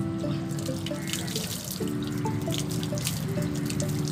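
Water splashing and dripping into a bucket as long hair is wetted and rinsed by hand, over background music with held notes.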